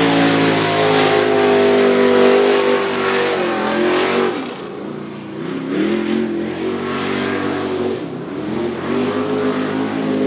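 Race truck engine running hard at high revs as it laps a dirt track. Its pitch drops twice, about four seconds in and again about eight seconds in, as the throttle is eased for the turns, then climbs back up under acceleration.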